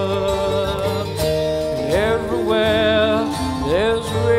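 Live folk-jazz band: a male singer holds drawn-out notes with a wide vibrato and slides upward twice, over acoustic guitar and bass.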